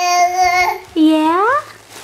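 Infant vocalizing: a long held cooing note, then a shorter call that rises in pitch about a second in.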